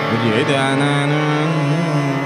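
Indian classical raga played over a steady drone, its melody sliding between notes.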